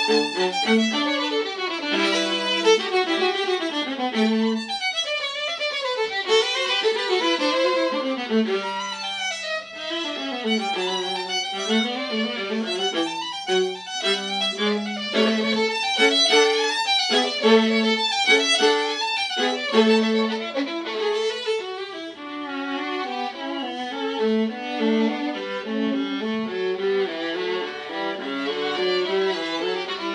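A violin and a viola playing a bowed duet without a break, both parts moving through quick runs of notes that climb and fall.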